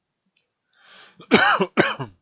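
A man coughing twice in quick succession, after a short intake of breath.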